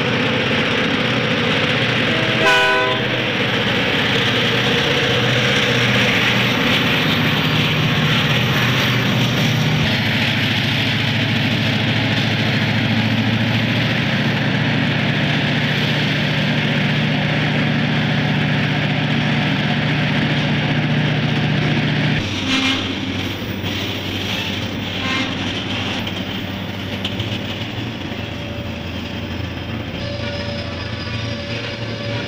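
Two Canadian Pacific diesel freight locomotives passing close by, engines droning steadily, with a short horn blast about two and a half seconds in. The engine drone drops away about 22 seconds in, and the freight cars follow, their wheels clacking over the rail joints.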